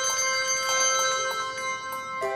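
Handbell choir playing. A chord of several bells struck together rings on, and further bells are struck one after another about a second in and again near the end.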